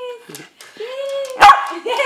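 Small white spitz-type dog whining in drawn-out, pitched cries, then giving one sharp, loud bark about a second and a half in. It is excited at being told it is time for a walk.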